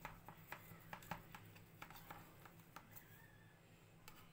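Faint, irregular clicks of a knife cutting through a tray of basbousa, a syrup-soaked semolina cake, as the blade is worked around the rim of a plate.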